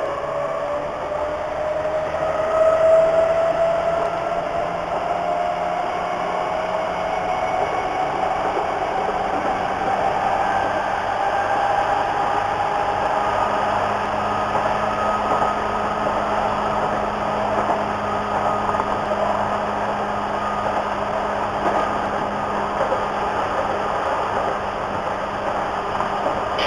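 Hamburg U-Bahn DT3-E train running on its tracks, heard from inside the car: a steady rumble of wheels on rail with a low hum. Over it, a traction-motor whine rises slowly in pitch through the first dozen seconds as the train picks up speed.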